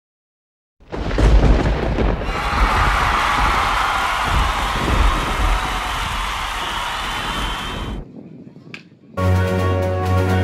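Wind rumbling on the microphone over outdoor noise, starting abruptly after a moment of silence and dropping away about eight seconds in. Background music starts near the end.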